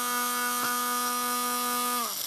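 Electric hand blender motor running at a steady high whine, with one brief click a little over half a second in.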